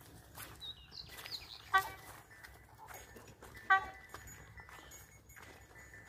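Two cows walking on a soft dirt track, their hooves treading with soft scattered thuds, amid high chirping. Two short, sharp pitched calls stand out, about two seconds apart.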